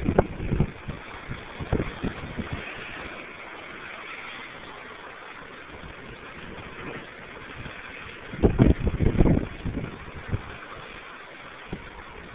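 Ocean surf washing and churning against lava rock below a sea cliff, a steady hiss of moving water. Short loud low rumbles break in at the start and again about two thirds of the way through.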